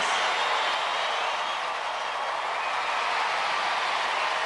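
Large arena crowd cheering and applauding in a steady roar.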